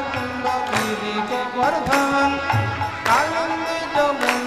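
Devotional kirtan music: a harmonium sustains notes under regular mridanga drum strokes, with chanting.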